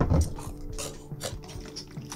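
TV episode soundtrack: a heavy thud, then several sharp crunching hits over held notes of music.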